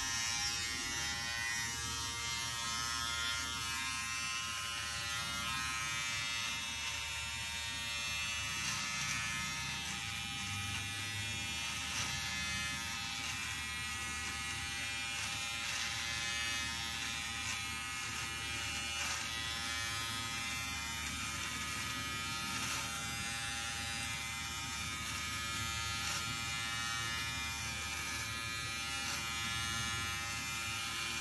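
A Nova electric beard trimmer buzzing steadily as it is run along the jaw and neck, cutting the beard shorter.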